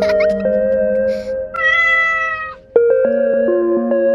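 Gentle background music of held notes with a cat's meow laid over it, one longer meow about one and a half seconds in; the music dips briefly just before three seconds in and resumes.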